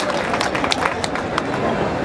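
Large crowd applauding, with sharp individual claps standing out in the first second and a half.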